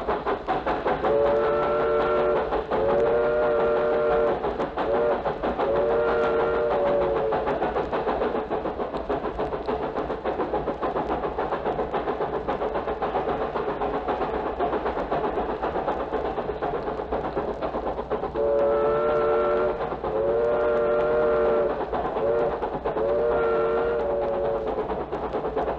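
Train sound-effects recording played from a vinyl LP: a moving train with a rhythmic, pulsing running noise, sounding a multi-note chord whistle in a long-long-short-long pattern, about a second in and again near the end. That pattern is the railroad signal for approaching a grade crossing.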